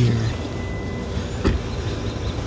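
Steady background noise with a single sharp knock about a second and a half in.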